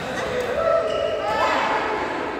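Badminton doubles in a large sports hall: players' voices and their footwork on the court, with short squeaky pitched sounds and the hall's echo.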